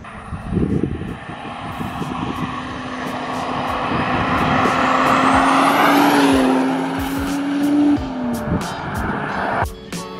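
Volvo 240 wagon powered by a swapped-in turbocharged Toyota 2JZ-GTE inline-six driving past: the engine and tyre sound grows steadily louder, peaks as the car passes about six seconds in, then drops in pitch and fades.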